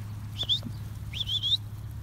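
Two short, high whistled chirps, each sliding up and then wavering, about half a second in and again near the middle, over a low steady rumble.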